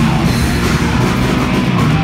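A heavy rock band playing live and loud: distorted electric guitar over a drum kit, with no vocals.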